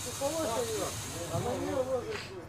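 A steady high-pitched hiss with a faint voice speaking quietly beneath it.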